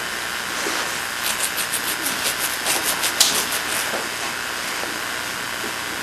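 Steady hiss from an old camcorder recording. About a second in, a quick run of faint soft ticks and rustles starts as a toddler handles cloth at a wicker basket, and it dies away after about three and a half seconds.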